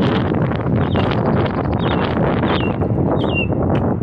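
Strong wind buffeting the phone's microphone in a steady rough rush, with several short, falling chirps from birds over it.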